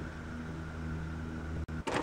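Petrol push lawn mower engine running steadily with a low, even hum, cut off suddenly near the end.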